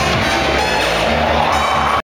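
Live electronic music played from laptops, loud and steady, with a bass line moving between low notes under higher synthesized tones.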